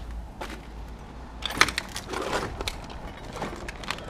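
Rustling and clattering of cardboard boxes and old junk being handled in a dumpster, with a cluster of sharp clicks and knocks about one and a half to three seconds in and a few more near the end.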